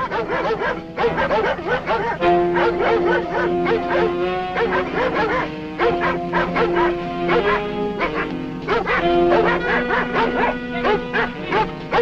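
Dogs barking and yelping rapidly and continuously over a music score of long held notes.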